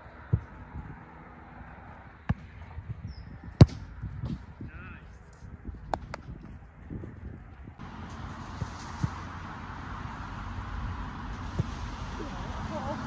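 A football being kicked on a grass pitch: a handful of sharp thuds spread out, the loudest about three and a half seconds in, over outdoor background noise that turns louder and hissier about eight seconds in.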